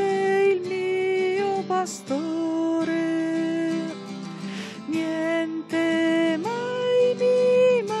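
A hymn sung by a woman's voice over acoustic guitar, the melody moving in slow, long-held notes.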